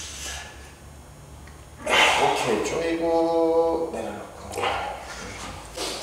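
Men straining through a heavy set of barbell curls, giving effortful groans that start about two seconds in. One long, steady groan is held just past the middle, followed by fainter straining sounds.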